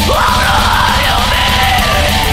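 Black metal: a harsh screamed vocal comes in right at the start, over dense drumming and a stepped melody line.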